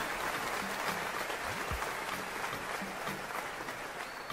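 A crowd applauding steadily.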